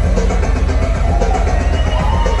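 Thrash metal band playing live at full volume: heavily distorted guitars and bass over drums and cymbals, heard from within the crowd.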